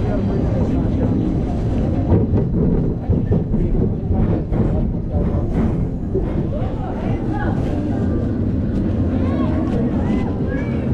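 Steady low rumble on the camera microphone, with rustling and scattered clicks from a jacket rubbing against a chest-mounted camera. Voices are heard in the background, mostly near the end.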